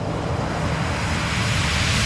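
A building, rushing roar of noise over a low rumble, swelling steadily louder with no tune or beat: a riser or whoosh sound effect in a dubstep mix intro.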